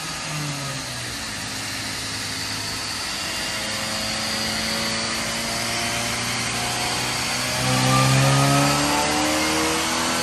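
Supercharged Mazda 3 Skyactiv-G 2.5 L four-cylinder running on a chassis dyno. The engine note dips briefly about half a second in, holds steady, then climbs in pitch and is loudest about eight seconds in as the revs rise.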